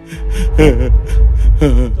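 A man sobbing with gasping, wailing cries, twice, over background music with a deep low rumble that swells in just after the start.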